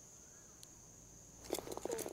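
Insects chirring faintly, one steady high-pitched tone, outdoors on a quiet green. Near the end comes a quick run of light clicks and knocks.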